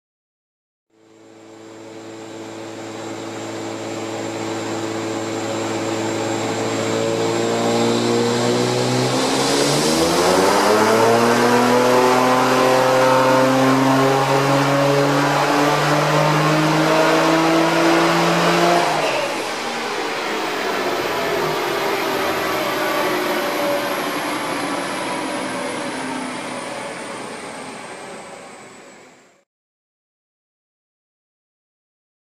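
A Nissan 350Z's V6 making a chassis-dyno pull. It runs steadily at first, then the revs climb smoothly for about nine seconds. The throttle snaps shut and the engine winds down while a high whine falls slowly in pitch.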